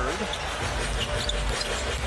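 Basketball game in an arena: steady crowd noise with a ball being dribbled on the hardwood court during live play.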